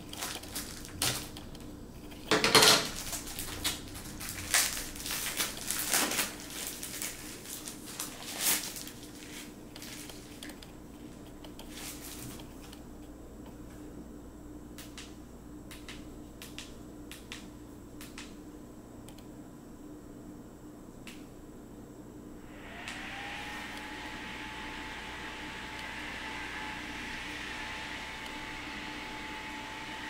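Paper wrapping crinkling and small plastic clicks as a handheld device is unwrapped and handled, thinning to a few scattered clicks. About three quarters of the way in, a steady whirring hum starts, its tone rising briefly and then holding, like a small fan spinning up.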